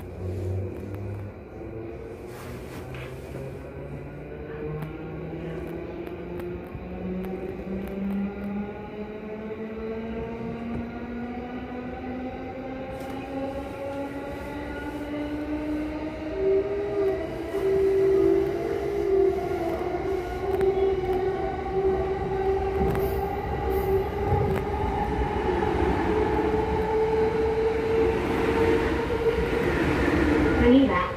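Electric commuter train heard from inside the carriage, its traction motors whining in several tones that rise steadily in pitch as the train accelerates. Wheel and rail rumble grows louder with the speed.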